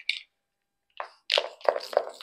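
MAC Prep + Prime face mist sprayed from a pump bottle: after a short silence, several quick short puffs of spray from about halfway through.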